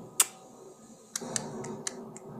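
One loud, sharp click, then four lighter clicks in quick succession about a quarter second apart, over a faint background.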